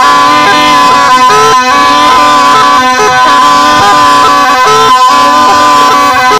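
Snake charmer's been (pungi), a gourd-bodied double-reed pipe, played loudly and without a break: a steady reedy drone under a wavering melody.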